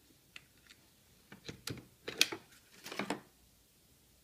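Plastic and metal clicks and clatter as a car seat's harness buckle and straps are handled and moved: a few light clicks, then a burst of knocks in the middle, the loudest about two seconds in.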